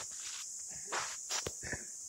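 A few soft footsteps and scuffs in the second half, faint against a steady high hiss.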